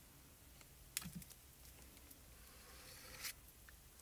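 Near silence with a sharp click about a second in, a few faint ticks, and a soft scrape near the end: a palette knife working thick paste out of a small jar and starting to spread it over a plastic stencil.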